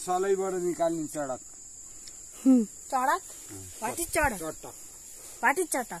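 A steady high-pitched insect trill, typical of crickets in the grass, running under bursts of talk.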